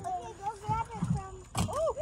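A thump as a small bass tossed toward the boat's live well lands short on the deck, with children's voices faint in the background.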